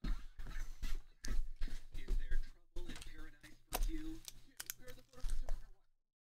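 Trading-card packaging and cards handled on a table: irregular rustles, clicks and knocks, with a few low thumps. A low voice sounds briefly at times.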